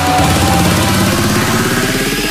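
Background electronic dance music in a build-up: a buzzy, rapidly pulsing tone climbs steadily in pitch.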